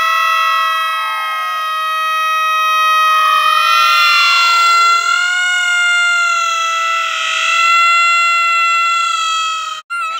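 Boys' voices holding one long, high, steady shout for nearly ten seconds, with a second voice sliding up and down under it in the middle. It cuts off sharply just before the end.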